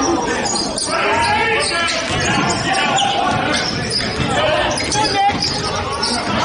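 Game sound from a basketball game in a gymnasium: a basketball bouncing on the hardwood floor amid indistinct voices of players and spectators calling out in the hall.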